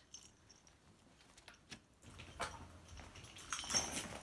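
Faint rustling of a fabric bag being rummaged through, with small clicks and clinks as chargers are taken out of it. Mostly quiet for the first two seconds, then busier handling in the second half.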